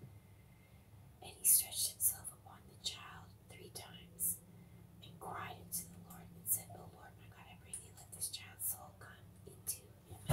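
Whispered speech, with crisp hissing s-sounds: a person reading aloud in a whisper.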